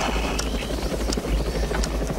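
Helicopter cabin noise from inside the aircraft: a steady low rotor and engine drone with a fast, even beat.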